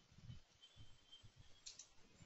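Faint computer keyboard keystrokes: about half a dozen soft, irregular taps, with one sharper click near the end.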